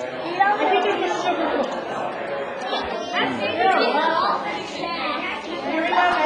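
Overlapping chatter of several people talking at once, no single voice standing out.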